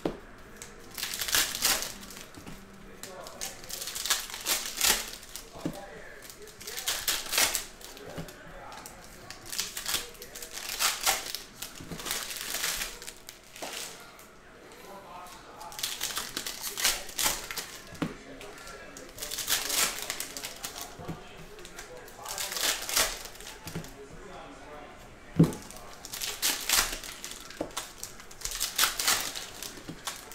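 Foil trading-card pack wrappers crinkling and cardboard cards being flicked and slid through the hands, in short bursts of rustling every second or two, with one sharper knock near the end.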